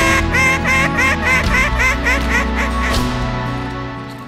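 Mallard-hen quacking: one long quack, then about a dozen short quacks that come quicker and fall in pitch, the descending cadence of the hen's hail or greeting call, ending about three seconds in. Background music runs under it.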